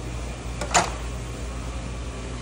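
Steady low background hum in an auto shop, broken once by a short, sharp knock about three-quarters of a second in.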